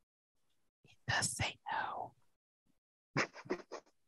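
A person's voice, quiet and breathy: a short whispered phrase about a second in, then a quick run of short bursts near the end.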